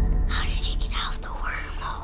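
A child whispering close up, breathy and without full voice, over low droning film-score music.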